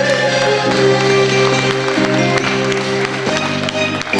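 Closing instrumental bars of a Japanese kayōkyoku (enka-style) backing track: held chords that change a few times, with no voice over them.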